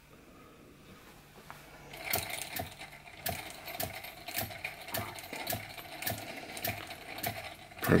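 Fleischmann toy steam engine run on compressed air, starting up about two seconds in and running slowly with a regular click about twice a second.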